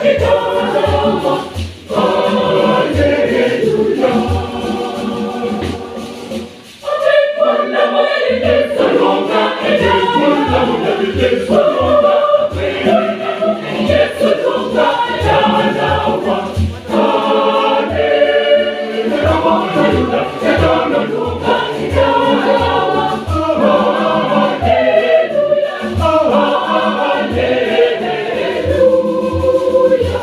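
A mixed choir singing in parts over a pair of hand-played conga drums keeping a steady beat. The singing and drumming drop away briefly about seven seconds in, then pick up again.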